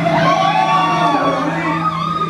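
Live rock band with electric guitars playing loudly: a steady low note holds underneath while a high note swoops up and back down, then another high note is held near the end.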